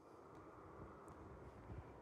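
Near silence: faint outdoor ambience with a low rumble.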